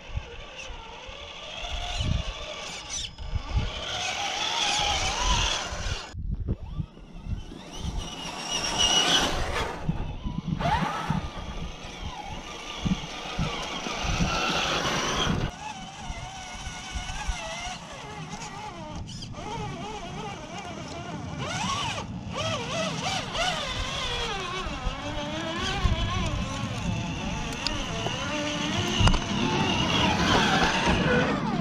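Electric motor and gear whine of a scale RC rock-crawler truck, rising and falling in pitch with the throttle as it crawls over rocks. Low bumps and rumbles come through underneath.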